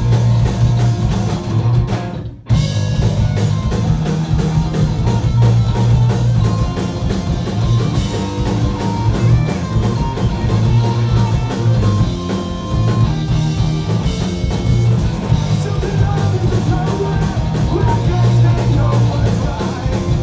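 Punk rock band playing live at full volume: distorted electric guitars, bass and drum kit under a singer. The sound drops out briefly about two seconds in, then the band carries on.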